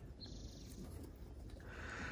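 Faint low-level sounds of goats feeding with their heads in a wooden feed trough.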